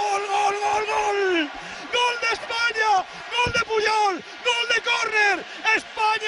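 A man's voice yelling in celebration of a goal: one long held shout that falls away about a second and a half in, then a run of short, loud shouts, each dropping in pitch.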